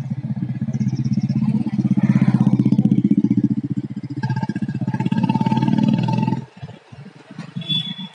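A motorcycle engine running close by, with a fast, steady pulsing, until it drops away about six and a half seconds in.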